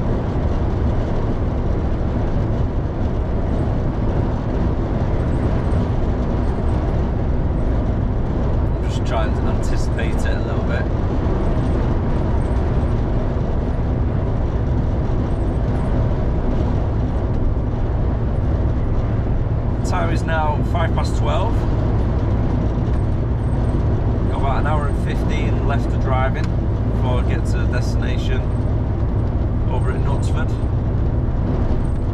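Steady engine drone and road and wind noise heard inside the cab of an HGV lorry cruising at motorway speed.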